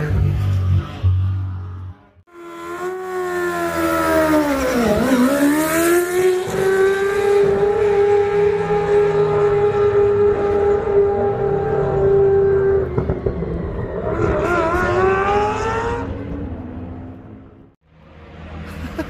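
Four-rotor turbocharged Mazda RX-7 rotary engine at high revs on the track, its pitch sweeping down and climbing back up about five seconds in, then holding one high steady note for several seconds before cutting off. A shorter rising burst of revs follows near the end, then fades.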